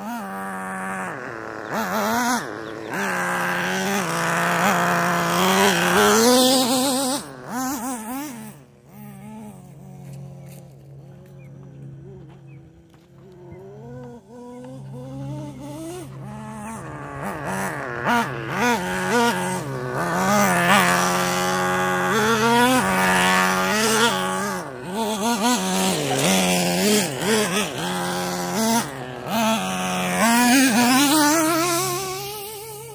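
Nitro RC truck's small two-stroke glow engine revving up and down as the truck is driven, its pitch rising and falling with each burst of throttle. It grows faint for several seconds in the middle, then comes back louder.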